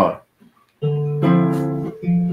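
A nylon-string classical guitar strums a D minor chord about a second in, which rings on and slowly fades.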